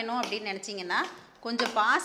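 A woman speaking, with a steel ladle clinking and scraping in a stainless-steel pressure cooker as thick gravy is stirred.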